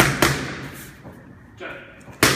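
Boxing gloves striking focus mitts: two sharp smacks in quick succession at the start.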